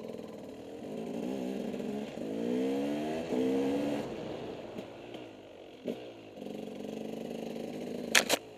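Off-road motorcycle engine running under way, rising in pitch as it accelerates about two to four seconds in, then settling to a steadier, lower note. A short knock sounds about six seconds in.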